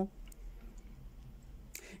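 Faint clicks and, near the end, a short scratchy sound of a needle and thread being worked through cross-stitch fabric stretched in an embroidery hoop.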